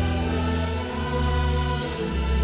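Slow church music: long held chords over deep bass notes, the chord changing about once a second.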